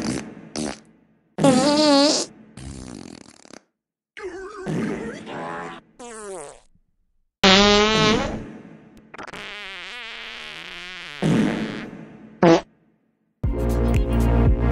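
A string of about ten loud dubbed-in fart sound effects, each a separate burst with a wobbling pitch, some short and some drawn out over a second or more. Electronic music starts near the end.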